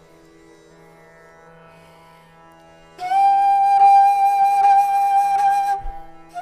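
A bansuri, the Indian side-blown bamboo flute, enters about halfway with one long, loud, breathy held note in a Hindustani classical performance. Before it, only a soft steady drone is heard.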